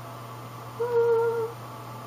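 A woman's short hummed note at a steady pitch, held for about half a second.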